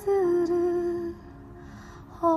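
A woman singing one long held note that dips slightly at the start and ends a little after the first second, leaving a faint, soft accompaniment tone underneath.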